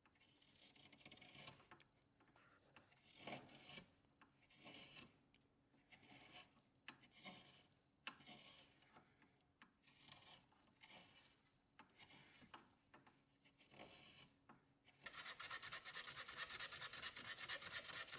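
Hand gouge carving the bowl of a maple spoon: faint scraping cuts, irregular, roughly one every second or two. About fifteen seconds in, this gives way to louder, rapid, even back-and-forth strokes of hand sanding on the wood.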